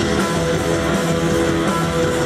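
Rock band playing live, with strummed electric guitars and bass guitar over a steady, dense band sound.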